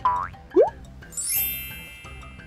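Cartoon-style sound effects edited over light background music with a steady beat: a quick rising 'boing' about half a second in, then a bright sparkling chime that starts just after a second and rings out.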